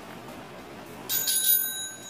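A small bell rung by a dachshund puppy in bell training, struck about a second in with a bright ding that rings on for most of a second.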